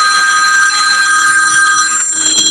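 A telephone ringing loudly: a steady electronic ring made of several high tones sounding together.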